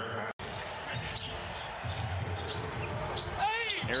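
A basketball being dribbled on a hardwood court over steady arena background noise. The sound drops out completely for a moment near the start.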